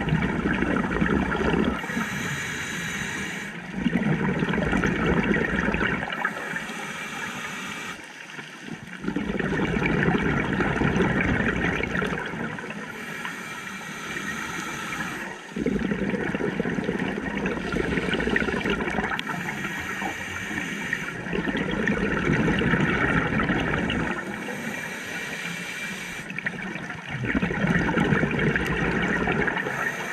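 Scuba diver breathing through a regulator underwater: a short hiss on each inhale, then a louder rush of bubbles on each exhale, one breath about every five to six seconds.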